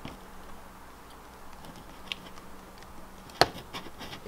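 Quiet handling of a plastic dishwasher wash pump as it is held free of its housing. There is a faint low steady hum, a few light ticks, and one sharp plastic click about three and a half seconds in.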